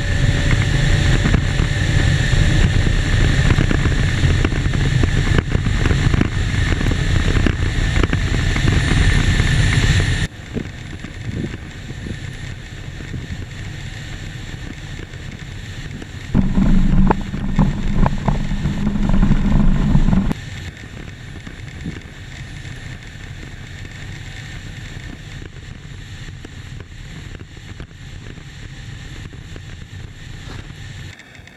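Electric sidecar motorcycle running at speed, heard from a camera mounted on it: loud wind rush on the microphone with a steady motor whine. About ten seconds in it cuts to a much quieter, steady rushing noise, broken midway by about four seconds of louder rumble with a low hum.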